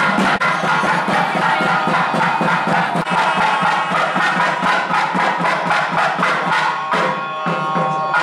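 Traditional temple music: a drum beaten in rapid, continuous strokes over a steady drone and held tones.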